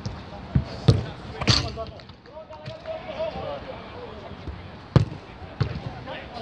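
A football being kicked and struck during five-a-side play: about five sharp thuds, the loudest about a second in and about five seconds in.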